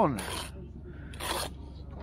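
Bricklayer's steel trowel scraping wet mortar against brick and mortar board: two short scrapes about a second apart.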